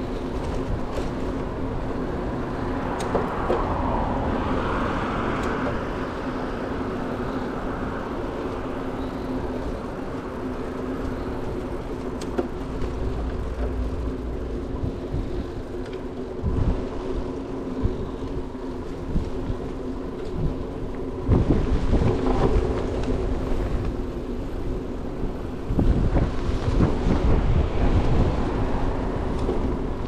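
Traffic and road noise heard from a moving bicycle, with a steady hum and low rumble. Wind buffets the microphone in heavier gusts from about two-thirds of the way in.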